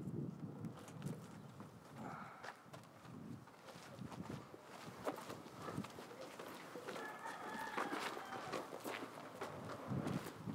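Chickens clucking with a rooster crowing, over footsteps on a dirt road. There are pitched calls about two seconds in and again near the end.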